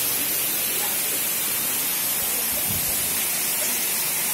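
Water pouring from a chute onto the curved blades of a low-head elliptical-core impulse water turbine, a steady rushing splash.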